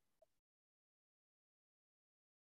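Near silence: a very faint hiss that cuts off about half a second in, leaving dead digital silence.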